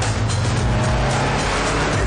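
A car engine running steadily with background music over it.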